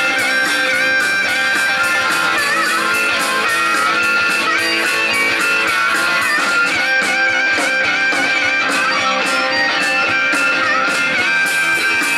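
Live rock'n'roll band playing an instrumental break: electric guitars and drums under a lead line of held and bent notes, the frontman playing harmonica into a handheld microphone.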